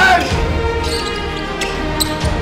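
A basketball bouncing a few times on a hardwood court as a player dribbles, under background music.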